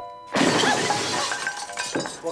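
Glass shattering: a sudden loud crash about a third of a second in, with the breaking noise carrying on for over a second, over background music.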